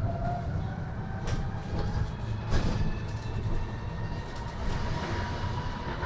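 Cabin sound of a MAN Lion's City Hybrid bus under way: a faint electric drive whine rising slowly in pitch as the bus gathers speed, over road and running rumble. A couple of short knocks or rattles come about one and two and a half seconds in.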